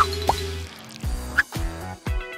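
Background music with three short, rising, drip-like blips, the first at the very start and the last about halfway through. The music's bass drops out less than a second in.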